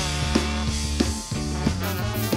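Live ska band playing an instrumental passage: drum kit with sharp regular hits, electric bass holding low notes, and guitar.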